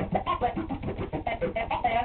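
Turntable scratching: a vinyl record is pushed back and forth by hand under the stylus, so the sample sweeps up and down in pitch in rapid, short, chopped cuts.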